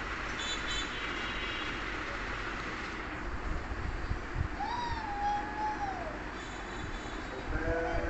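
A young child's voice: one drawn-out, wavering meow-like call of about a second and a half, a little past the middle, over steady background hiss.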